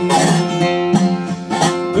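Acoustic guitar strumming about twice a second under sustained notes from a resophonic (Dobro-style) guitar played lap-style, an instrumental gap between bluegrass vocal lines.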